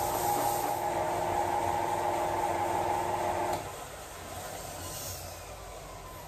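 Craftsman belt sander running steadily with a cast-iron lathe carriage part pressed against the belt, sanding down a worn low spot in its machined surface. The sound cuts off about three and a half seconds in, leaving a quieter sound with a faint falling tone as it winds down.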